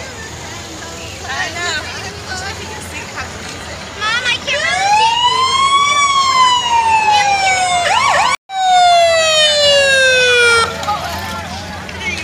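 Fire truck siren sounding one long wail: it rises for about two seconds, then falls slowly and cuts off abruptly near the end, with a split-second break partway through. Crowd voices are heard before it.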